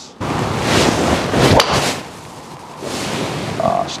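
A golf driver swing and strike: a rushing swish, then the sharp crack of a Callaway Paradym Ai Smoke Triple Diamond driver's face hitting the ball about a second and a half in, with a sound off the face that is stunning to the player.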